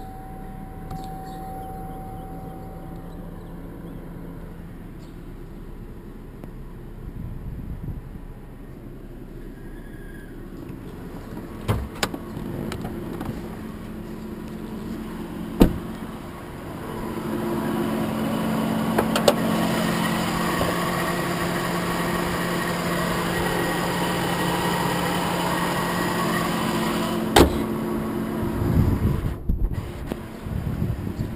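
Cadillac CTS engine idling steadily, its hum heard first from the driver's seat and louder in the second half once the car is heard from outside. A few sharp knocks and clicks land along the way.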